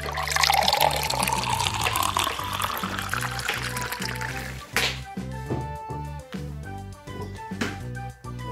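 Liquid pouring from an upturned plastic bottle into another plastic bottle, the pitch climbing slightly as it fills, stopping about four and a half seconds in. Background music with plucked guitar runs throughout.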